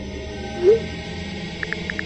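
Phone-messaging send sound effect: one short rising tone about two-thirds of a second in, as a text goes out. Keyboard tap clicks, several a second, start again near the end, over low background music.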